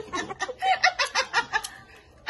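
A person laughing in short, quick, stifled bursts, fading out near the end.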